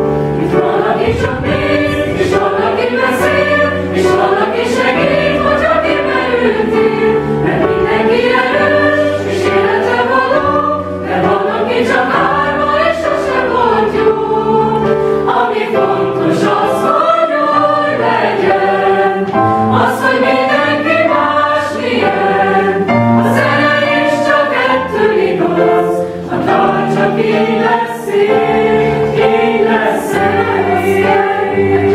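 Mixed-voice school choir singing in parts, in long sustained phrases with a few short breaths between them.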